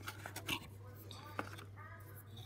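A few light clicks and taps as washi tape rolls are spun and handled in a small cardboard dispenser box, over a low steady hum.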